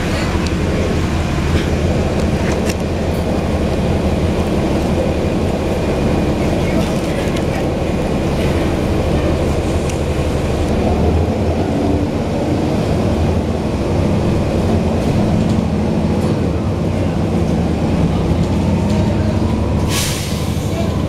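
Cummins ISL inline-six diesel engine of a 2011 NABI 416.15 transit bus running, heard from the rear seats inside the cabin as a steady, loud low drone, with a few light clicks from the bus interior.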